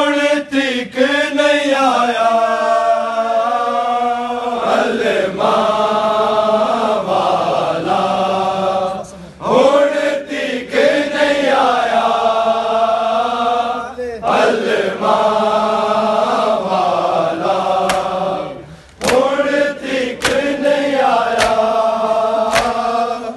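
Men's voices chanting a noha, a Muharram mourning lament, in long sung phrases with short breaks between them. Sharp slaps of hands on bare chests (matam) come through the chant, most thickly near the start and near the end.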